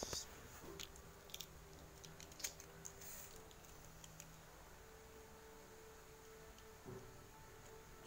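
Near silence: faint room tone with a few small clicks in the first three seconds and a faint steady low hum.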